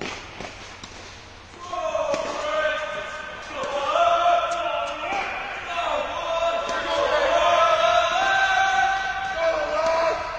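Tennis ball bounces and racket strikes echoing in an indoor court, sharp knocks in the first two seconds. From about two seconds in, a loud voice holding long notes that slide up and down, like singing, runs over the play.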